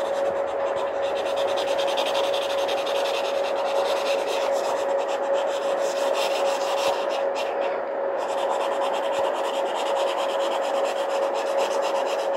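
Pencil rubbing and scratching on paper as the drawing is shaded, with a continuous hiss and a steady hum underneath.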